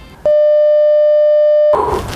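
A censor bleep: one steady electronic beep, about a second and a half long, starting a quarter second in and stopping abruptly, with all other sound dropped out beneath it.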